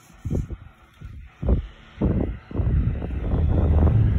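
Airflow from a Claymore rechargeable circulator fan buffeting the microphone. There are a few short gusts at first, then a steady low wind rumble from about two and a half seconds in, as the microphone is held right up to the running fan.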